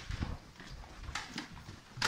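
Soft footsteps climbing a staircase: a few low thuds near the start, then light rustling.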